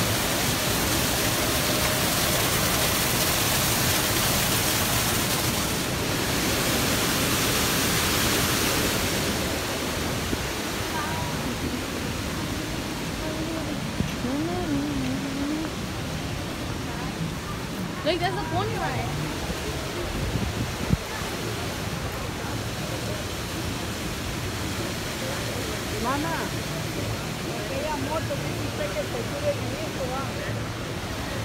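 A steady rushing hiss, louder for the first nine seconds, under scattered voices of people talking in the background.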